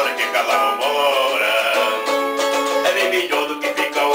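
A man singing while strumming chords on a small four-string guitar.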